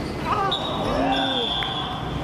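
Players shouting as a goal goes in, over a long blast of a referee's whistle: a steady high tone starting about half a second in and held for about a second and a half.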